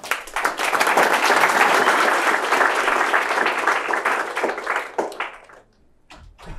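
Audience applauding: many hands clapping together, starting suddenly and dying away about five and a half seconds in.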